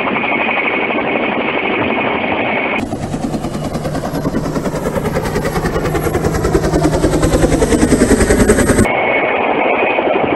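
Mil Mi-2 helicopter flying low and close, its rotor blades beating in a fast, rapid chop, with a pitch that falls slowly as it comes on. The chop sets in about three seconds in, grows louder and cuts off sharply near the end, with a steadier, duller noise before and after.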